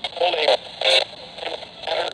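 Talk-radio speech from an FM broadcast played through the small speaker of a RunningSnail hand-crank emergency radio, thin and without bass, over a steady hiss of static.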